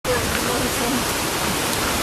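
A steady, even rushing hiss with faint voices talking underneath.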